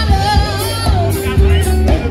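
Live band playing loudly: a singer's voice over drums and a steady, pounding bass line, with voices from people nearby mixed in.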